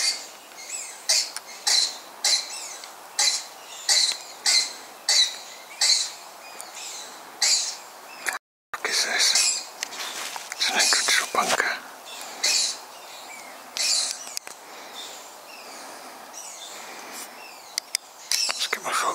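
Footsteps crunching underfoot outdoors, about one and a half steps a second. Just past the middle the sound cuts out completely for a moment, then comes back as more irregular rustling and scuffing.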